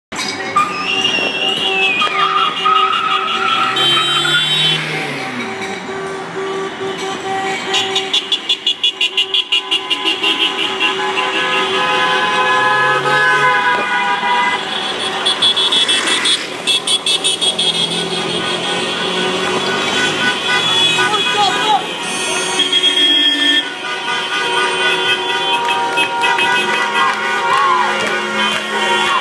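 Many car horns honking along a busy street: overlapping long blasts, and about eight seconds in a quick run of short rhythmic beeps. Voices of a crowd on the street run underneath.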